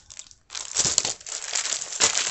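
Packaged clear plastic impression mats being handled and set aside, their plastic crinkling and crackling. The crinkling starts about half a second in, with a sharp click about a second in.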